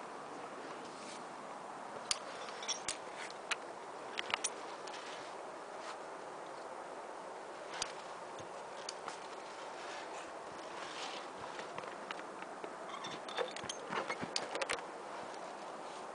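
Scattered clicks and scrapes from a climber moving along a steel via ferrata cable, the gear and the handheld camera knocking and rubbing, over a steady hiss. The clicks come in clusters a couple of seconds in and again near the end.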